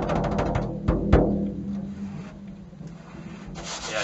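Large hand-held frame drum played with the bare hand: a rapid one-handed finger roll on the head, broken off about a second in by two deep, ringing bass strokes, followed by softer rubbing and brushing on the skin.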